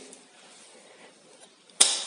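One sharp snap about two seconds in as the tang-break tool is given a short, hard blow, breaking off the driving tang of a newly fitted Powercoil wire thread insert. Before it, faint handling of the tool in the hole.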